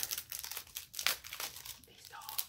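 Thin plastic packaging crinkling in the hands as it is opened, a run of quick, irregular crackles.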